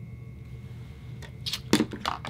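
Lips smacking and parting with a few quick wet clicks in the second half, the loudest about three-quarters in, after a freshly applied liquid matte lipstick. A steady low hum lies underneath.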